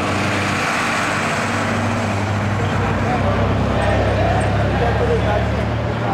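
Police vehicles, a bus among them, driving slowly along the street with their engines running: a steady low engine note that drops lower about halfway through. Voices sound in the background.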